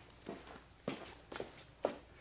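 Rope being fed through a loop and drawn tight in short pulls: about four brief rustles and scrapes of rope rubbing on rope.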